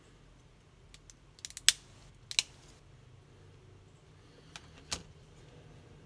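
Plastic snap clips of a Samsung C3510 phone's housing clicking as it is pried open with a thin tool: a few sharp snaps, the loudest about two seconds in, and a last one near the end.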